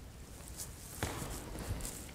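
Leather-soled dance shoes stepping on a parquet floor, a few soft footfalls with one sharper tap about halfway through.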